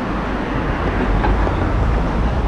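Steady low rumble of street traffic and riding noise while travelling along a busy road on an electric scooter.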